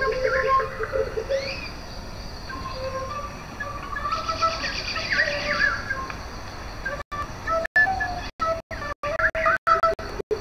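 A small flute playing held, wavering notes among bird-like chirps and a fast high trill. In the last few seconds the sound cuts out to silence in many short gaps.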